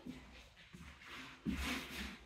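Faint rubbing and scuffing of someone moving about: a few soft scuffs, the loudest about one and a half seconds in.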